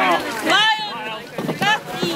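Several people's voices calling out in short bursts over the steady rush of shallow river water.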